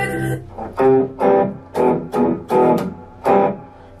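Electric guitar, a Godin TC through an MXR Fat Sugar drive pedal, strumming about six single chords one after another, each left to ring and fade before the next, as chords are tried out by ear. The recorded song being learned stops just after the start.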